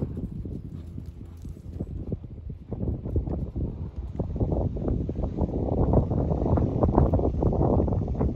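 A horse's hooves at a walk on arena sand: a steady run of hoofbeats that grows louder from about three seconds in.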